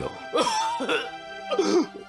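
A man with tuberculosis coughing and clearing his throat in three short bursts as a drink is held to his lips, over background music with long held notes.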